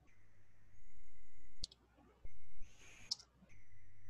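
A few sharp computer keyboard and mouse clicks over a faint steady electrical hum, with a short hiss a little after halfway.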